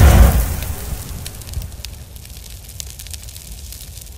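Logo-reveal sound effect: a deep boom right at the start that dies away over a few seconds, with scattered crackling on top.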